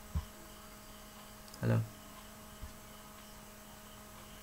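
Steady electrical mains hum in a small room, with a short low thump near the start and one brief voiced sound, a single short syllable, a little before the two-second mark.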